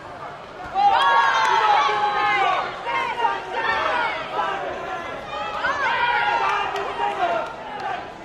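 Voices shouting in a large sports hall. Loud, high-pitched yelling starts about a second in and comes in several bursts, as coaches and supporters call out during a kickboxing bout.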